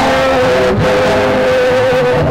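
Loud live band music: one long note held steady over the band's low bass.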